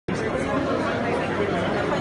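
Several people talking over one another: steady overlapping chatter of a small crowd in a large hall, with no one voice standing out.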